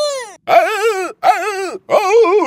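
A cartoon character's high-pitched voice making wordless, wavering cries in about three short phrases, each falling in pitch as it ends.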